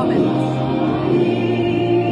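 Background choral music: voices holding long, sustained chords at a steady level.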